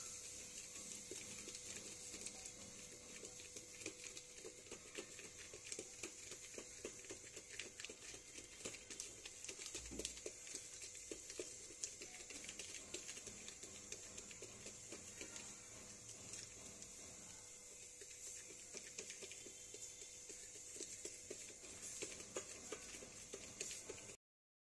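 Fingertips patting and pressing soft dough flat on a wet plastic sheet over a steel plate: faint, quick, irregular taps and light plastic crinkles over a steady faint hiss.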